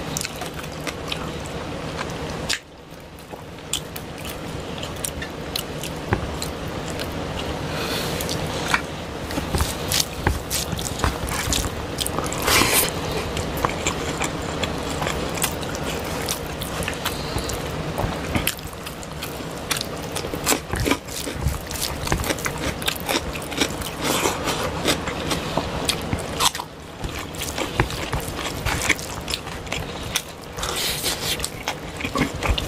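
Close-miked eating sounds: chewing of rice and fish curry, with fingers mixing rice into the gravy on the plates. Many small, sharp, wet clicks follow one another without pause, dipping briefly about two and a half seconds in.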